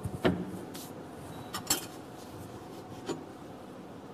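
Kitchenware handled on a worktop: a plate and a metal baking tray of biscuits giving a few scattered clinks and knocks, the loudest just after the start.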